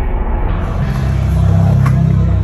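Skateboard wheels rolling on a concrete bowl, a heavy low rumble that swells about a second in, with a sharp click from the board near the end.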